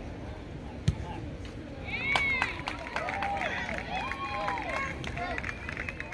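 A soccer ball kicked once, a sharp thump about a second in. From about two seconds in, spectators cheer and shout, with scattered clapping, as the penalty kick goes in for a goal.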